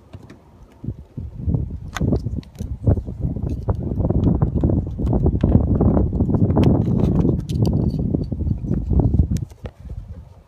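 Loud, low rumbling noise on the phone's microphone, building about a second in and falling away near the end, with scattered sharp clicks over it.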